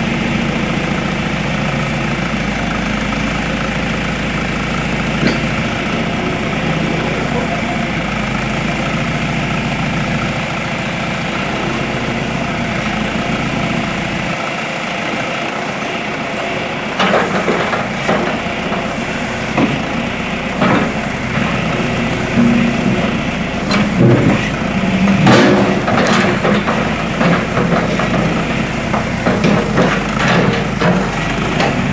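John Deere backhoe engine running steadily at idle. From about halfway on the engine note surges unevenly and is broken by a series of sharp metallic clanks and knocks as the machine's hydraulics and stabilizer legs work.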